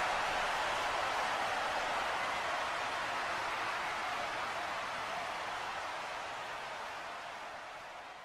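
A steady rushing noise that fades out gradually over the second half.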